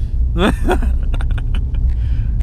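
Steady low rumble of a car's engine and road noise heard inside the moving car's cabin, with a brief voice sound about half a second in and a few light knocks from the handheld microphone being bumped.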